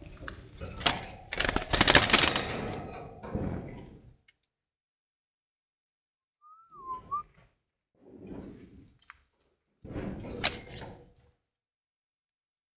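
Rustling, clicking and knocking as a hand handles young doves in a plastic nest basket inside a wire cage, loud and busy for the first few seconds, then in short bursts in the second half. A short wavering whistle sounds about seven seconds in.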